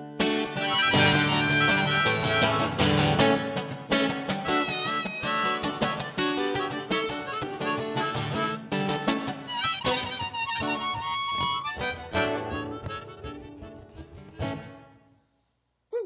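Harmonica played in a neck holder over strummed acoustic guitar, an instrumental passage with no singing. The playing dies away near the end, followed by a single short click.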